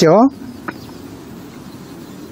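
A man's voice finishes a word, then low, steady outdoor background noise with one light click a little under a second in.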